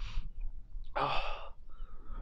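A man's audible breath out, one short breathy exhale about a second in, over a low wind rumble on the microphone.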